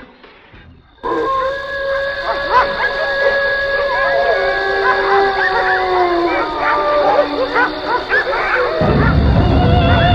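Near silence for the first second, then several dogs howling together: long held howls at different pitches that slowly sink, with short yelps between them, over music. A low rumble comes in near the end.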